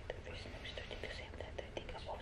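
Faint whispered speech with a few small clicks.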